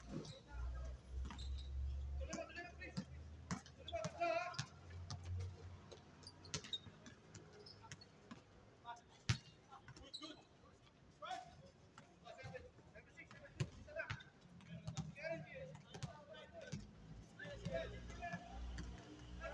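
Basketball bouncing and being dribbled on an outdoor hard court during a pickup game, irregular sharp thuds with one loud thud about nine seconds in. Players call out to each other in the distance.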